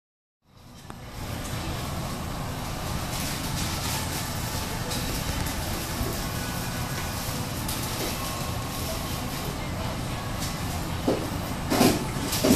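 Steady low rumbling room noise of a fast-food dining room, with a few short louder sounds near the end.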